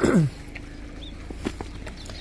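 Quiet outdoor background with a brief falling-pitched voice-like sound at the very start and a few faint clicks after it.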